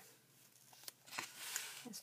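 Paper pages and a card tag rustling and sliding under hands: a few faint ticks, then a brief rustle in the second half.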